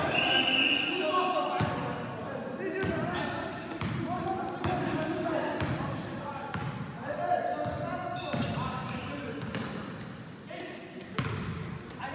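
Basketball bouncing on an indoor gym court at irregular intervals, with players' voices calling out in the echoing hall. A brief high squeak near the start.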